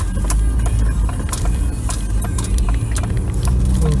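Car cabin sound: a steady low rumble of engine and road, with sharp knocks and rattles coming about three times a second.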